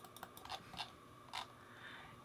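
A handful of faint, irregular clicks from a computer keyboard and mouse in use.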